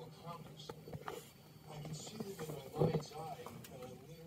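Indistinct speech from a television documentary playing in the room, with a few light clicks in the first second or so.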